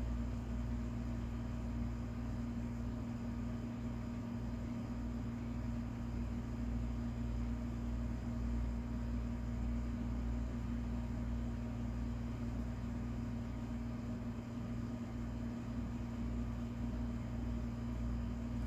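A steady low mechanical hum with a constant background noise, unchanging throughout and with no distinct sounds standing out.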